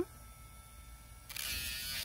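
A Dremel rotary tool running on its low setting, a faint steady whine, then grinding a dog's toenail from a little past halfway as a louder, rough, hissing buzz.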